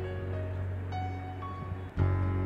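Soft instrumental background music with held, steady notes, briefly dipping in level just before the end.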